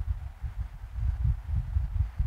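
Uneven low rumble with a faint hiss: background noise of the lecture's recording microphone, no other distinct sound.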